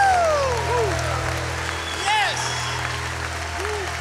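Audience applauding and cheering, with a few whoops rising and falling above the clapping. The applause slowly dies down.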